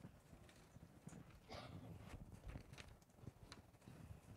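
Near silence: room tone with a few faint, scattered taps and knocks.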